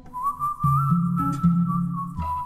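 Background music: an instrumental break in a song, a single high held melody note that bends slightly in pitch over bass and guitar.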